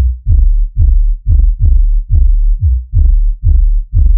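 The soloed sub-bass band of a drum and bass track: deep kick and sub-bass notes pulsing in a fast, syncopated rhythm, about three to four hits a second. Each hit starts with a short knock and falls in pitch, with the higher parts of the mix filtered out.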